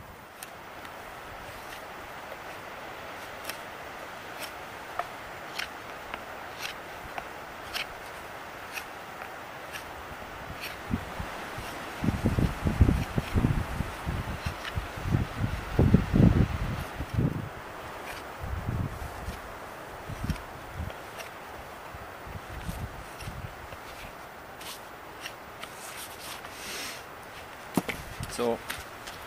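Knife carving a wooden tent stake: short scraping, clicking strokes repeating about once a second. Loud wind gusts buffet the microphone in the middle.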